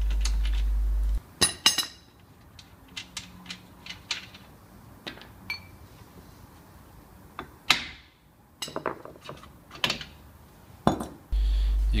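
Scattered metal clinks and knocks as the rear hub nut comes off and the hub is tapped loose and pulled off the stub axle of a drum-brake rear axle; the sharpest clicks come about a second and a half in, a louder knock near eight seconds. A steady low hum cuts off about a second in and returns near the end.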